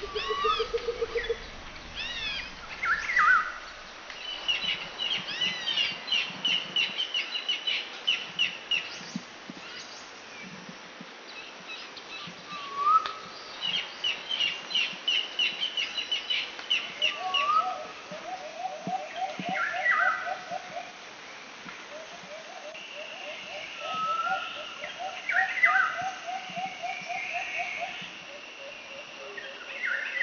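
Overlapping bird calls: long runs of fast, repeated high chirps, short rising whistles that return every few seconds, and, from about halfway, a lower rapid pulsing trill.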